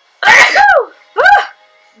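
A woman sneezing twice, about a second apart. Each sneeze is a loud sudden burst that ends in a voiced 'choo' falling in pitch.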